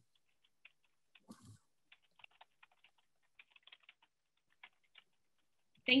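Faint, irregular clicking of typing on a computer keyboard, with a brief soft noise about a second in.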